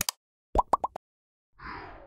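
Sound effects of an animated like-button graphic: a sharp double click at the start, four quick pops rising in pitch about half a second in, then a short swoosh near the end.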